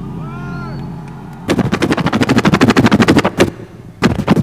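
Turntable scratching: a pitched sample is dragged back and forth in slow arcing scratches, then about a second and a half in it is chopped into a rapid, even stutter of sharp cuts that breaks off shortly before the end.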